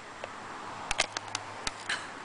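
Thin plastic water bottle crackling as it is drunk from: a string of sharp, separate crinkling clicks, most of them in the second half.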